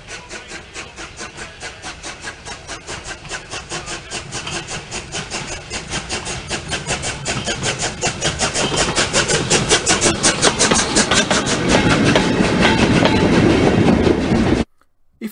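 Steam exhaust beats of the working replica of the 1830 locomotive Planet as it runs towards the listener. The beats are rapid and even, about five a second, and grow steadily louder as it comes closer.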